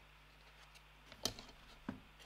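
Two faint short knocks about half a second apart over a low steady hum, as over-ear headphones are taken off and set down on a wooden desk.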